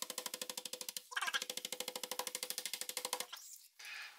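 A chef's knife chopping rapidly on a plastic cutting board, about ten quick strokes a second, as it scores a slice of marinated pork loin to tenderise it instead of pounding it with a mallet. There is a short break about a second in, and the chopping stops a little after three seconds.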